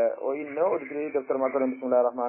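A man speaking in a lecture. The voice sounds thin and narrow, like audio over a radio or phone line.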